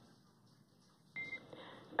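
About a second of near silence, then a short electronic beep as an air-to-ground radio transmission opens, followed by a steady radio channel hiss.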